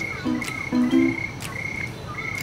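Crickets chirping in short, evenly repeated pulses, under soft plucked-string background music.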